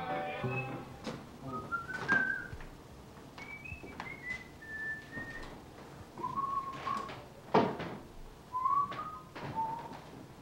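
A person whistling a wandering tune in short notes that slide up and down, with scattered knocks and clicks, the loudest a sharp knock about three-quarters of the way through.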